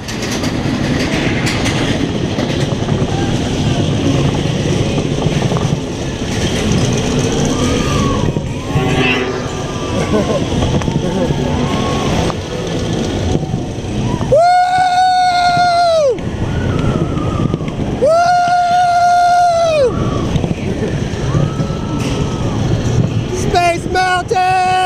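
Space Mountain roller coaster train running on its track in the dark, a steady low rumble with faint clatter. From about halfway, three long, held, high-pitched tones sound, each about two seconds, rising at the start and dropping away at the end.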